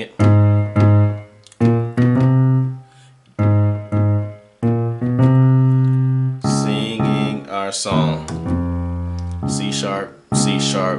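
Digital piano playing gospel chords with a left-hand bass line walking up A♭, A♭, B♭, B, C. The chords are struck slowly in pairs with short gaps, then play on without a break over the last few seconds while a voice sings along.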